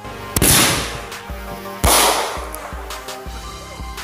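Two loud firework bangs about a second and a half apart, each trailing off in a hiss, with music playing in the background.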